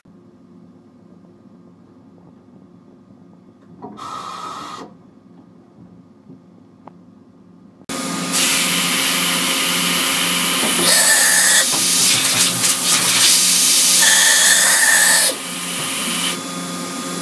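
Kitamura Mycenter HX250 machining center running. A faint hum is broken by a short burst of hiss about four seconds in. About eight seconds in a loud, steady hiss starts with a fast low pulsing underneath and a few brief high whines, and it drops back shortly before the end.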